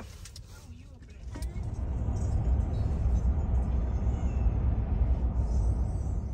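Road noise of a moving car: a steady low rumble that swells up about a second and a half in.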